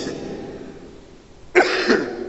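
A man coughs briefly into his hand near the end, after a short pause.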